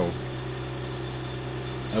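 The engine of a crack-sealing melter machine running steadily at idle, a constant low drone with no change in speed.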